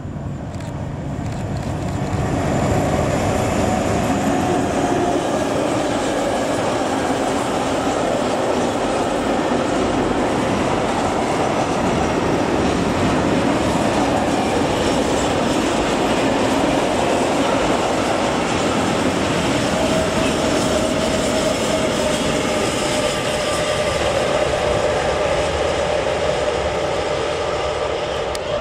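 Diesel-hauled freight train of tank wagons passing at close range. The sound builds over the first few seconds as the locomotive arrives, then the wagons' wheels on the rails make a long, steady, loud running noise, with a thin high tone coming and going.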